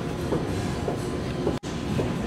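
Loud, steady background din of a busy indoor space, a rumbling wash of noise with faint traces of voices in it. It cuts out for an instant about one and a half seconds in.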